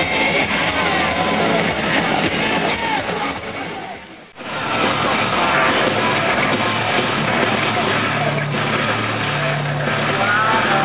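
Loud live rock music played over a festival main-stage sound system, with electric guitars. It drops out abruptly for an instant about four seconds in, where the recording cuts, then carries on.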